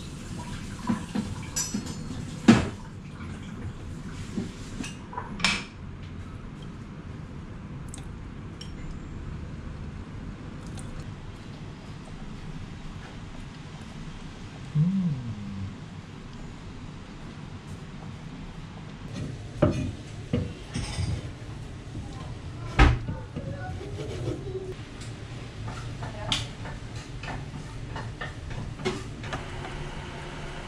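Kitchen clatter of cookware and utensils: scattered sharp clinks and knocks of pots, pans and chopsticks over a low steady background, the loudest knocks about two and a half seconds in and again about twenty-three seconds in.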